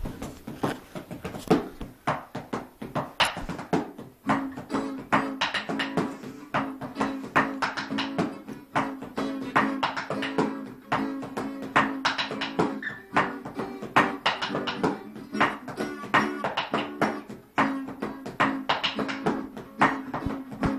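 A guitar strummed in a fast, busy rhythm, with ringing chord notes that carry through from about four seconds in.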